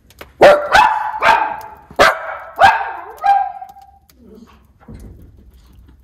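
Miniature schnauzer barking: a quick run of about six sharp barks in the first three and a half seconds, the last one trailing off into a drawn-out note.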